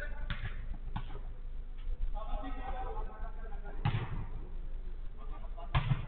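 Sharp thuds of a football being struck during a five-a-side game on artificial turf: four hits, the loudest about four seconds in and just before the end. Men's voices call out between the thuds.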